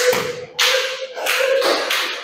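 Three short bursts of scuffing, tapping noise, with a thin steady tone under them.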